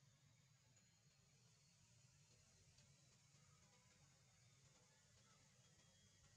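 Near silence: only a faint steady hiss and low hum.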